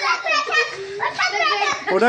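Several children's voices talking and calling out over one another while they play.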